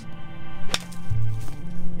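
A single sharp crack of a golf club striking a ball off a hitting mat on a short-backswing shot, about three-quarters of a second in, over background music.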